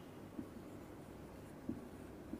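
Marker pen writing on a whiteboard, faint, with two brief taps of the pen strokes, about half a second in and near the end.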